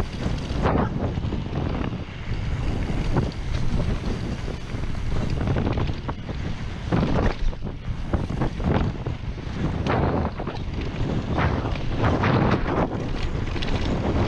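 Wind buffeting a chest-mounted action camera's microphone over the rumble of a Trek Slash mountain bike's tyres rolling fast on a dirt trail. Frequent short knocks and rattles come through as the bike runs over bumps and roots.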